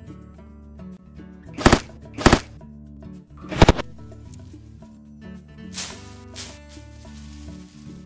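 Background music with three loud, sharp cracks, about one and a half, two and a quarter, and three and a half seconds in, and two fainter ones around six seconds. They are the shots of compound bows and their arrows striking one-gallon milk jugs tossed as aerial targets.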